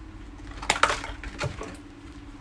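Crackling of the doll's plastic-and-cardboard box packaging being handled, with a cluster of sharp crackles about a second in and one more shortly after.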